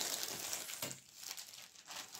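Clear plastic wrap crinkling as it is pulled off a clock radio. The crackling is densest in the first second, then thins to quieter rustles.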